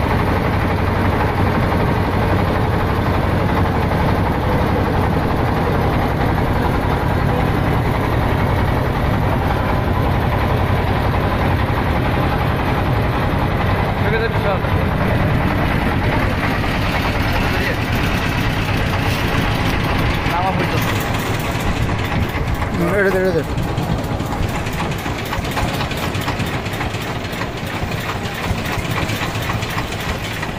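Engine of a wooden river boat running loudly and steadily under way, with voices heard briefly over it in the second half.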